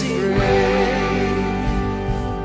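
Live worship band music: acoustic guitar, bass and drums, with a man's voice holding a wavering sung note through the first second.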